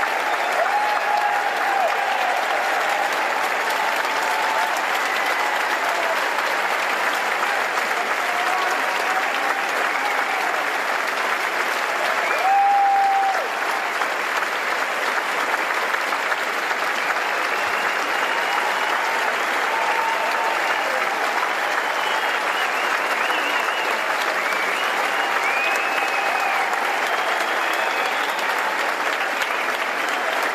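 A large indoor audience clapping steadily and continuously, with faint voices mixed in. There is one brief louder voice about twelve seconds in.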